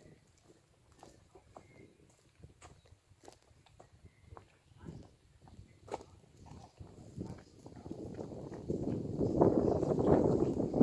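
Footsteps of a person walking on a paved path, a series of faint, separate steps. In the last few seconds a rough noise builds up and becomes the loudest sound.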